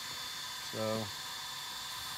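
A man's voice says one short word, over a steady background hiss.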